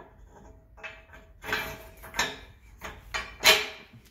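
A steel hinge pin pushed into a steel tipper-body hinge: a series of metal clinks and scrapes, ending in the loudest knock about three and a half seconds in as the pin seats.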